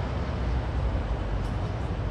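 Steady outdoor street background noise with a low rumble and no distinct events.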